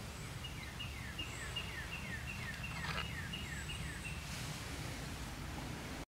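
A songbird singing a run of about ten quick, falling notes, roughly three a second, that stops about four seconds in. A brief rustle comes near the middle, over steady low outdoor background noise.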